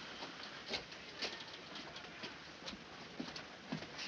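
Faint, irregular taps and rustles of cash being handled as a safe is emptied into a bag, over a steady soundtrack hiss.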